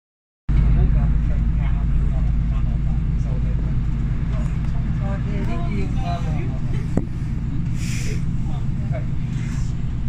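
Inside a diesel multiple-unit passenger train under way: a loud, steady low rumble of the engine and the running gear on the track. A sharp click about seven seconds in, and a short hiss about a second later.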